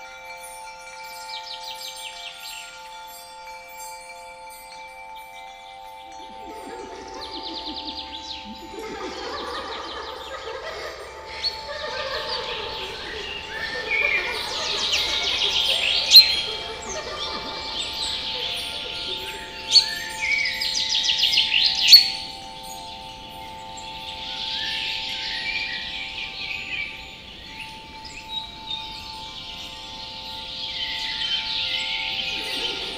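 Designed fantasy-forest ambience: birds singing and trilling over a steady chime-like drone. A chattering of small voices comes in about six seconds in, and a few sharp, loud accents sound around the middle.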